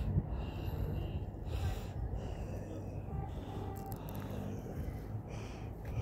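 Wind buffeting the microphone: a steady low rumble with gusts, a couple of brief stronger gusts partway through.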